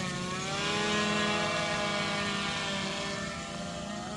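Small quadcopter drone hovering, its propellers giving a steady, many-toned buzz whose pitch sinks slightly in the first second, then holds with a gentle waver.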